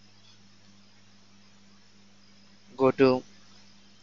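Steady low electrical hum and faint hiss of a recording setup, with a brief spoken word or two about three seconds in.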